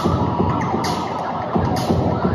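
Loud experimental electronic music: electric guitar through an amplifier layered over prerecorded computer sounds, with a deep pulse and a noisy burst repeating a little more than once a second.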